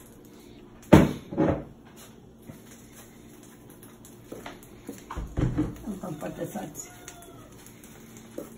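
Household clatter at a kitchen sink and counter: two sharp knocks about a second in, the first the loudest, and a dull thud about five seconds in, with faint voices after it.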